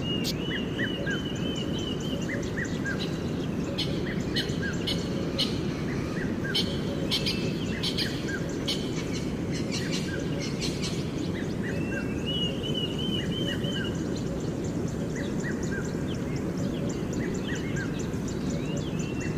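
A bird calling: a quick run of looping chirps, repeated three times (near the start, about two-thirds of the way through and at the end), with short lower notes in between. Under it runs a steady low background noise, and a patch of sharp clicks comes in the middle.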